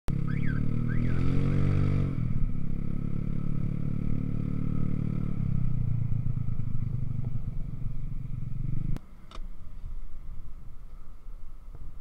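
Motorcycle engine running while riding, its pitch rising over the first two seconds and then holding steady. Its sound falls away abruptly about nine seconds in, leaving a quieter, uneven rumble.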